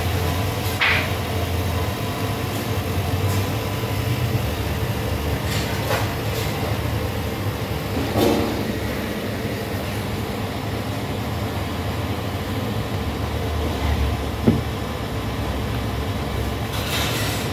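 Steady low rumble with a faint constant hum, typical of a stationary rail vehicle's running machinery heard from inside. A few brief knocks break through, the sharpest near the end.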